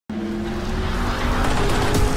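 A car engine running hard with tyres skidding on dirt, starting suddenly, with music underneath.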